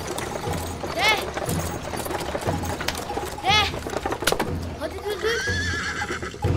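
Horse-drawn wooden cart on the move: the horse's hooves clop and the cart knocks and rattles in a steady rhythm. Twice, about a second in and again midway, the driver gives a short sharp "De!" to urge the horse on.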